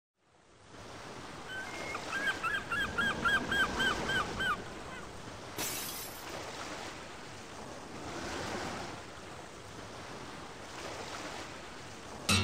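Sea waves washing in, a steady hiss that swells and falls. Near the start a bird calls about a dozen quick notes in a row, and there is a short burst of noise about halfway through.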